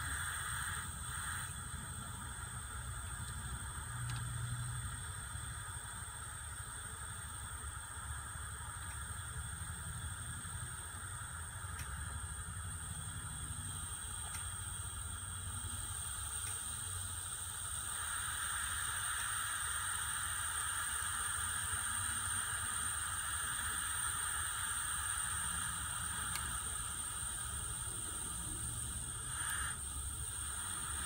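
Steady hiss of hot air blowing from a hot air rework station's Quadra-Flow nozzle, set to about 12–13 psi, onto a surface-mount chip to reflow its solder. The hiss grows a little louder about two-thirds of the way through.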